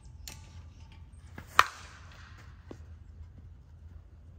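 A Short Porch Drip Johnny Dykes one-piece senior slowpitch softball bat hitting a pitched softball once, about a second and a half in: a single sharp crack with a brief ringing tail.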